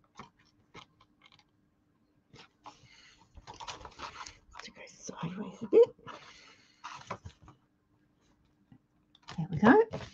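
Stiff cardstock being folded and pressed flat by hand: intermittent paper rustling and soft taps, with quiet gaps between.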